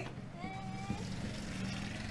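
A motor vehicle's engine running with a steady low hum, with faint voices in the background.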